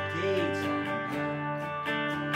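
Electric guitar strumming steadily over held organ chords from a Yamaha keyboard set to a Hammond organ sound, in a small band playing a slow folk-rock song.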